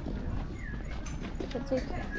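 Footsteps on paving with voices of passers-by and a steady low outdoor rumble.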